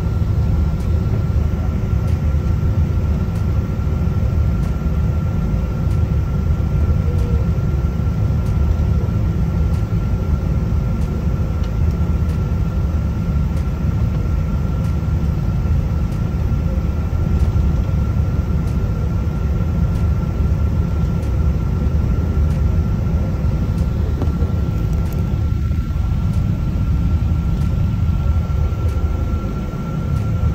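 Airliner cabin noise while taxiing, heard inside the cabin: a steady low rumble with one steady high-pitched whine from the wing-mounted jet engines.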